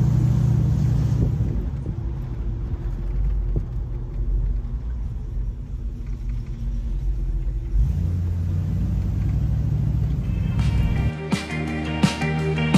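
Classic convertible's engine running on the move with the top down, a low steady rumble that swells in the first second and again about eight seconds in; the engine is still cold and warming up. Music with plucked strings and a strong beat comes in about a second before the end.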